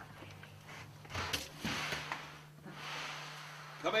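Soft rustling and handling noises in two swells, with one sharp click about a second and a half in, over a steady low hum.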